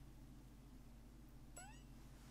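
Near silence with a low steady hum. About one and a half seconds in comes a single short squeak that rises in pitch.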